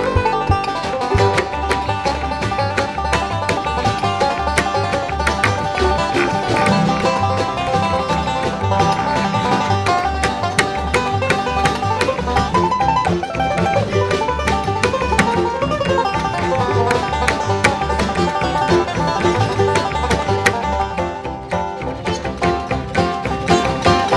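Acoustic bluegrass band playing an instrumental passage: five-string banjo and mandolin picking over acoustic guitar, upright bass and djembe hand drum, with a steady bass pulse.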